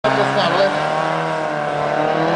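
Competition car's engine held at high revs in a steady note as the car turns tightly on tarmac, with some tyre squeal.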